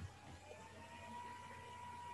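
Near silence: faint room tone with a soft click at the start and a faint steady tone from about half a second in.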